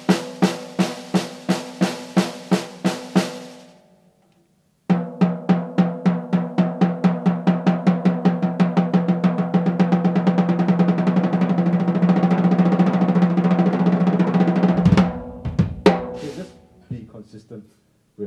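Snare drum played with sticks as a double-stroke exercise: an even run of about three or four strokes a second, a pause of about a second, then strokes that start slow and speed up into a fast, continuous roll. The roll stops about fifteen seconds in, followed by a couple of single hits.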